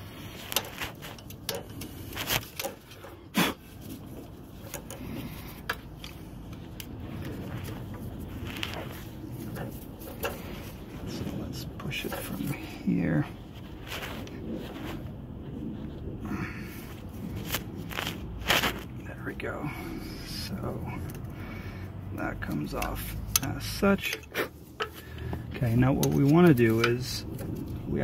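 Small metal clicks and scrapes of a screwdriver prying at a brake pad wear sensor's plug and clip on a brake caliper, irregular sharp ticks over steady background noise.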